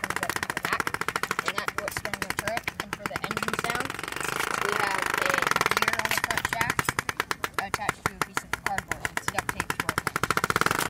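Rapid, even clicking, about ten clicks a second, from a small cart's geared, rubber-band belt drive turning; for a couple of seconds around the middle the clicks blur into a steadier whir.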